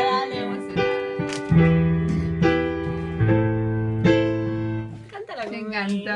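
Digital keyboard played in a piano voice: struck chords over long held low bass notes, the second bass note dropping lower about three seconds in. A voice joins over the keyboard near the end.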